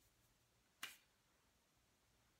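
One short, sharp snap a little under a second in, against near-silent room tone.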